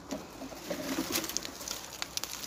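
A bird calling in a few short, low notes, with light crackling and rustling.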